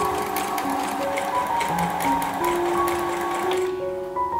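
Brother electric sewing machine stitching, a rapid run of needle strokes that stops shortly before the end, with background music over it.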